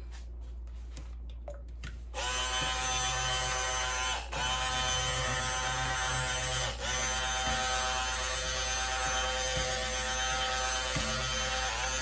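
Electric stick (immersion) blender starts about two seconds in and runs with a steady motor whine, blending a preservative into thick goat's milk lotion. The pitch briefly sags twice as the blade meets the thick mix.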